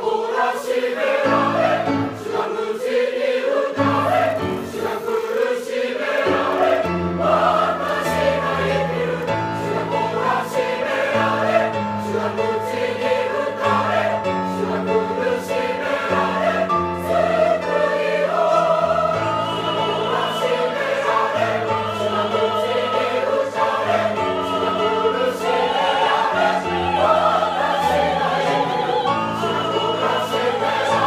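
Church choir singing a hymn in parts, with vibrato, over low sustained notes that change every second or two.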